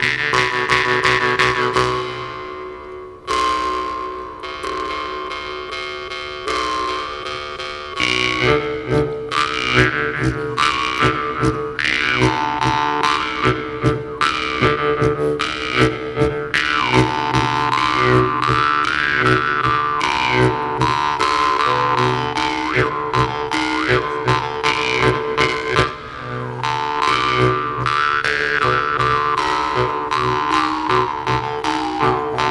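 Two jew's harps playing together: a steady twanging drone with overtone melodies gliding up and down as the mouth shapes the pitch. It is softer and held for the first few seconds, then plucked in a quick, even rhythm from about eight seconds in.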